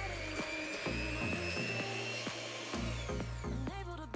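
Electric hand mixer running, its beaters whipping a cream mixture. The motor whine climbs slowly in pitch and fades out in the second half. Background music plays throughout.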